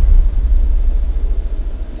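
Deep, loud rumble of a horror trailer's bass hit over a studio title card, slowly fading away.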